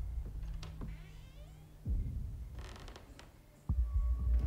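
Horror film trailer sound design: a sudden deep boom about two seconds in that fades away, a faint creaking squeak before it, and a short hiss followed by another deep boom near the end.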